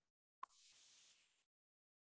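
Near silence, broken about half a second in by one faint sharp click followed by about a second of faint hiss.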